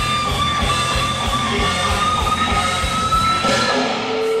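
Live rock-blues band: an electric lead guitar holds one long, sustained note that slowly bends upward in pitch, over bass and drums.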